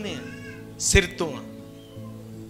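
A man's voice through a microphone and PA, in short gliding exclamations at the start and about a second in, over soft background music with held notes. A brief knock, likely on the microphone, comes with the second exclamation.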